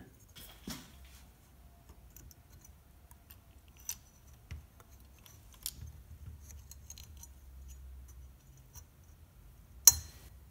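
Small scattered clicks and light metal scrapes as fingers and a screwdriver work the dial string off the tuning drum of a GE C-430A tube clock radio's metal chassis. One sharp metallic click just before the end is the loudest sound.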